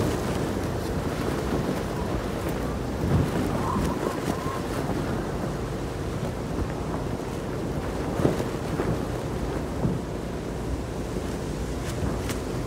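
Strong storm wind blowing and buffeting the microphone in a steady rush, with a few brief thumps about three, eight and ten seconds in.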